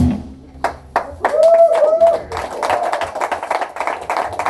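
The band's closing chord dies away, then a small club audience applauds, with a couple of whooping cheers about a second in.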